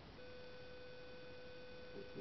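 One steady electronic beep held at a single pitch for about two seconds, over faint hiss.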